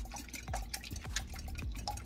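Wire whisk beating raw eggs in a glass mixing bowl: quick, uneven clicks of the wires against the glass along with the wet splashing of the eggs.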